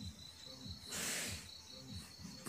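A steady high-pitched insect trill, like a cricket, with a low pulsing about three times a second beneath it. A short hiss of noise comes about a second in.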